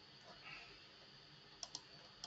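Faint clicks of computer keys, a pair of sharp ones close together near the end, over a low steady room hiss.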